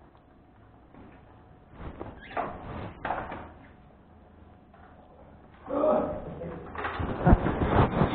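Muffled, untranscribed talk: faint in the first half and louder from about six seconds in, with a few sharp knocks near the end.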